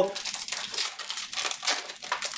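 Foil wrapper of a Panini Select football card pack crinkling and tearing as it is ripped open by hand: a quick run of irregular crackles.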